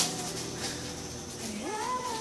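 Female singer's live vocal: a held note ends just after a short sharp noise at the start, then after a soft pause she slides upward into a new sustained note near the end.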